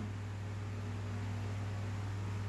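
Steady low hum with a faint hiss, unchanging throughout; no stirring or scraping strokes are heard.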